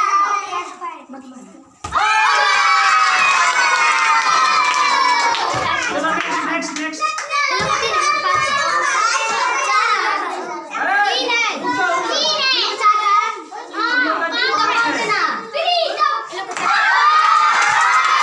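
A group of young children shouting and cheering together, breaking out suddenly about two seconds in and carrying on loudly with many overlapping calls.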